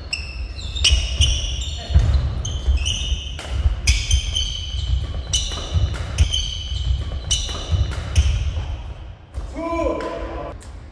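Badminton doubles rally: rackets striking the shuttlecock again and again, with court shoes squeaking sharply on the floor and feet thudding. A player gives a short shout near the end.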